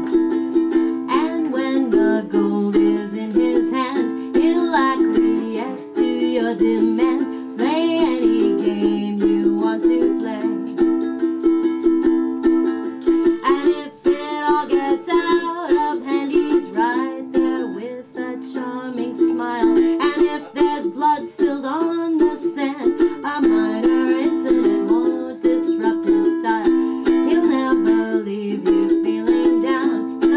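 Solo ukulele strumming steady chords, with a woman's voice singing over it in a small room.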